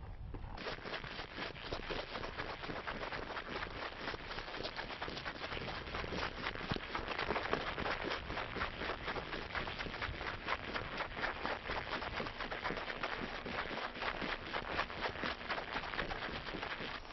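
Boots crunching on dry, hard-packed polar snow while walking, a continuous rapid crunching with no pause.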